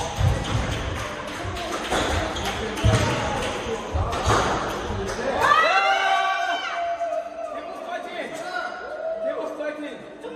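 Squash rally: the ball struck by rackets and knocking off the court walls and wooden floor in a string of sharp knocks and thuds. The rally stops after about five and a half seconds, and a high-pitched sound that rises and then holds takes over for the rest.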